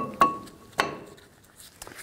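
Sharp metallic clinks of brake pads' steel backing plates knocking against the caliper bracket and its pad clips as the pads are slid into place: three clicks in the first second, one with a short ringing tone, then a few faint ticks near the end.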